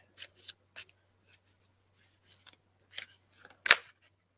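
Tarot cards being shuffled by hand: a few short, soft card rustles, with a louder, sharper card snap near the end.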